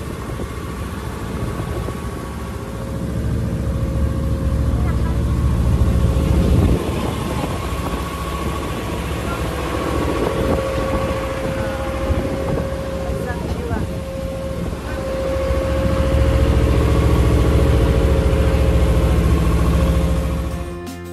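A wooden tour boat's engine running steadily with a low hum, growing louder twice: about three seconds in and again for the last few seconds.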